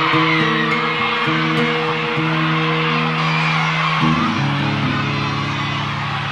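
A live rock band's intro: sustained guitar chords ring out, shifting to a new chord about four seconds in, while the audience screams and cheers over them.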